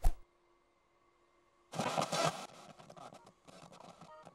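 Cartoon sound effects of a handheld satellite viewing device being keyed up: a sharp click, then a loud burst of noise just under two seconds in that trails off into quieter crackling.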